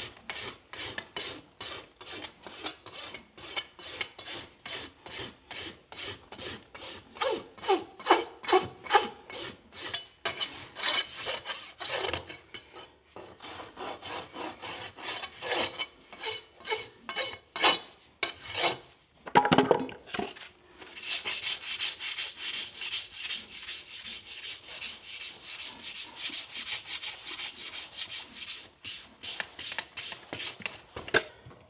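Farrier's rasp filing the wall of a shod horse's hoof in regular scraping strokes, about two a second, while the hoof is being finished after nailing on. Later the strokes turn quicker, lighter and higher for several seconds.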